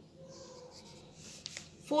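Pencil writing on a paper workbook page: faint, soft scratching strokes, with a couple of sharp ticks about one and a half seconds in.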